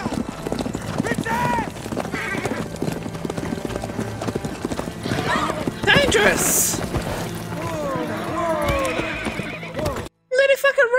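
Horses galloping, with rapid hoofbeats throughout and several whinnies, loudest about six seconds in. A man shouts 'whoa' at a rearing horse near the end.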